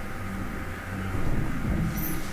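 Low, steady rumble of background noise in a large hall, with no ball strikes.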